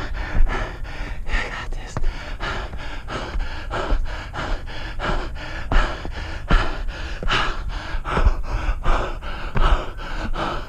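A runner's hard, rapid breathing, a gasp on each breath, about two a second, while running up steep railway-tie stairs, with footsteps on the wooden steps.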